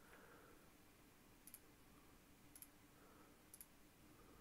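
Near silence broken by three faint computer mouse clicks, about a second apart.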